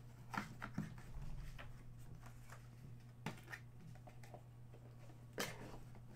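Scattered light clicks and knocks of a hard plastic display cube and cardboard boxes being handled and set down on a table, over a steady low hum.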